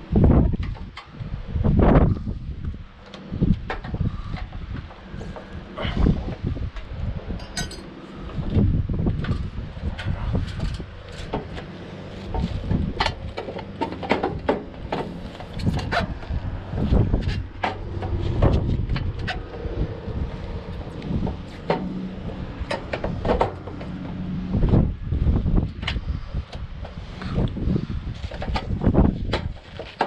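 Gutter section being handled and worked into its hanger clips: irregular knocks, clicks and rattles as the clips are pushed and snapped into place, over a low steady rumble.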